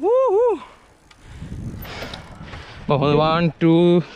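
Drawn-out wordless vocal sounds: a wavering voice at the very start and two long held voice notes near the end, with a low rushing noise in between.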